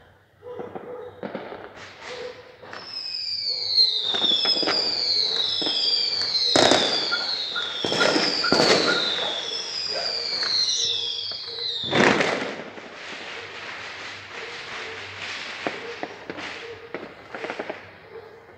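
Distant fireworks: a run of whistling fireworks, each a falling whistle about a second long, mixed with sharp bangs. The loudest bang comes about twelve seconds in and is followed by a dense crackling that fades.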